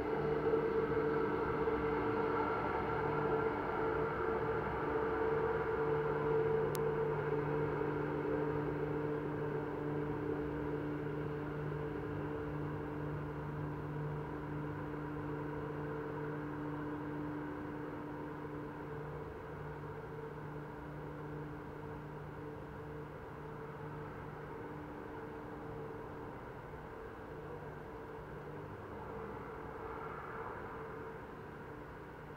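Steady mechanical hum made of a few low steady tones over a rushing haze, slowly getting quieter.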